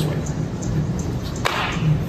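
A single sharp hit about one and a half seconds in, trailing off into a short swish, as a tomahawk strike is swung and deflected in a disarm drill. A steady low hum runs underneath.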